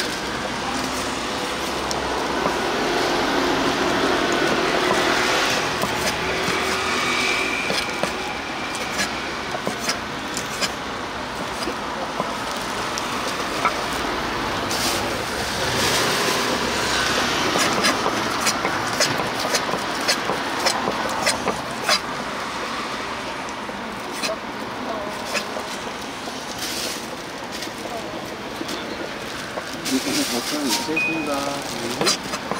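A kitchen knife knocking against a wooden cutting board at irregular intervals as pork offal and sundae are chopped, over steady street traffic noise.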